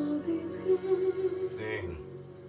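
Male vocalist singing a slow song in long held notes over soft accompaniment, played through a television in the room.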